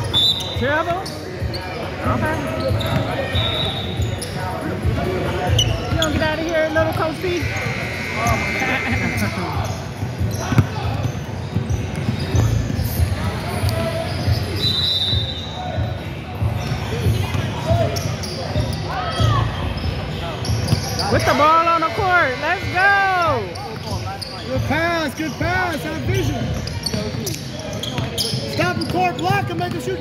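A basketball bouncing on a hardwood gym floor, with voices echoing around the hall. A run of high squeaks comes a little after the middle.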